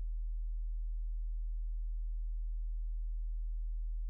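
Steady low electrical hum: one deep constant tone with faint overtones above it, with no other sound.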